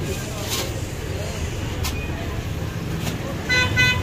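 Street traffic rumbling steadily, with a vehicle horn tooting briefly near the end.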